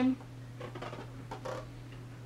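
A girl's voice ending a sentence, then a quiet room with a steady low hum and a few faint soft rustles as a picture book is turned round.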